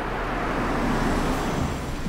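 A Honda SUV pulling up at the kerb and slowing to a stop. Its engine and tyre noise swell to a peak about a second in, then ease off.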